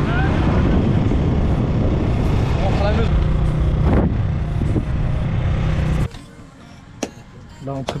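Riding on a motorcycle: the engine running with wind noise on the microphone and faint voices, cut off suddenly about six seconds in.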